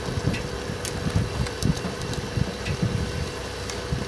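Boat engine idling: a steady drone with a constant hum, irregular low rumbling, and a few faint clicks.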